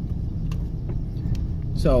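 Car cabin noise while driving: a steady low rumble of engine and road noise heard from inside the car, with a few faint ticks.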